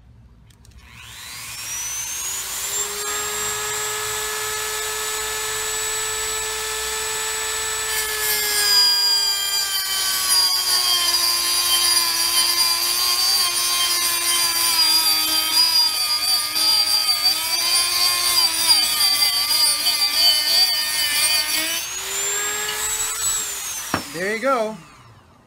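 Dremel rotary tool with a diamond cut-off disc spinning up to a steady high whine, then grinding into a green glass beer bottle from about 8 seconds in, its pitch dropping and wavering under load as the bottle is turned against the disc to cut the neck off. Near the end the pitch rises again as the disc comes free, and the motor winds down.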